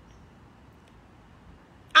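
Faint, steady outdoor background noise with a couple of tiny faint high chirps, then a woman's voice breaks in loudly near the end.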